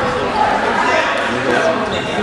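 Many voices of spectators and coaches shouting and talking at once in a large gymnasium, with no single clear word.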